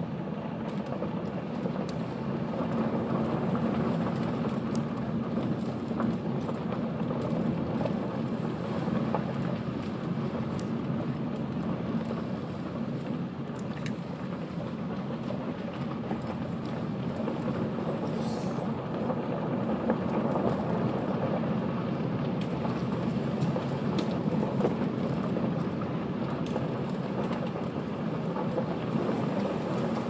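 Car tyres rolling over a gravel road, a steady crunching rumble with scattered small clicks of stones, heard from inside the car.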